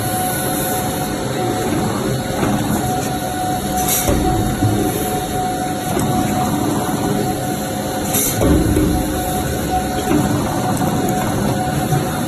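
Stainless-steel citrus juice processing machinery running, a steady mechanical din with a faint hum. A short hiss comes about every four seconds.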